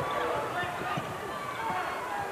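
Arena crowd chatter with a basketball being dribbled on the court during live play, a few dull bounces under the crowd noise.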